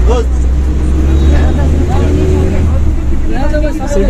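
City bus engine running with a steady heavy low rumble, heard from inside the crowded bus. Passengers' voices come over it near the start and again near the end.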